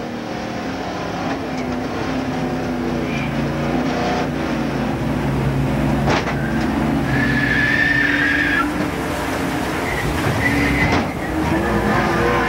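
In-car sound of a NASCAR stock car's V8 engine running at speed, with a couple of sharp knocks about four and six seconds in. A tyre squeal follows, from about seven seconds in to past eight seconds, as the car loses grip amid the crash.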